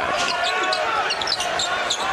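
Game sound of a basketball being dribbled on a hardwood court, sharp repeated bounces over the murmur of an arena crowd.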